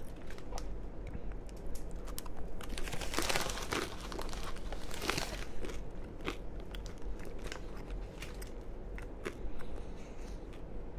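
Close-miked chewing and eating mouth sounds, with a paper food wrapper crinkling twice, about three and five seconds in.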